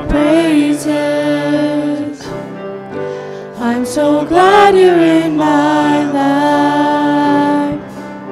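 Small worship group of male and female voices singing a praise song with grand piano accompaniment, the voices easing off for a softer phrase about two seconds in before swelling again.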